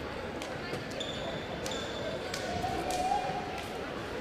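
Crowd chatter echoing in a school gymnasium, with a few scattered sharp thumps of balls bouncing on the hardwood floor and a couple of brief high squeaks.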